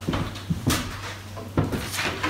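Handling noise: a few sharp knocks and thumps, about three, with light rustling between them, over a low steady hum.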